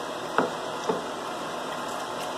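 A ceramic bowl set down on a kitchen counter: two short, light knocks under a second apart, over a steady background hiss.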